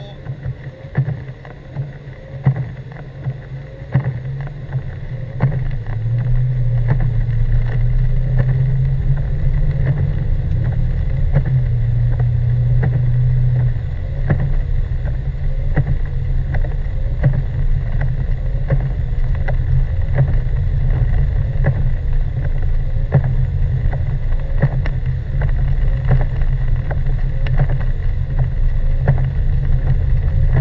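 Car engine and tyre noise heard inside the cabin while driving on a snowy road: a steady low rumble that gets louder about six seconds in, with scattered sharp ticks throughout.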